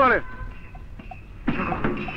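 A man's voice shouts a word, then after a short lull a rough, noisy vocal outburst like a cough begins about a second and a half in.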